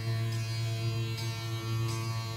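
Rudra veena playing a slow dhrupad alap in Raga Malkauns: single notes plucked about three times over a sustained, resonant low drone.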